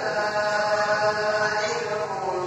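A single voice chanting melodically in long held notes that glide slightly in pitch, in the manner of Islamic recitation heard at a mosque.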